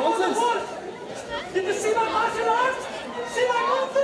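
Many voices chattering at once in a large hall, overlapping so that no single voice stands out.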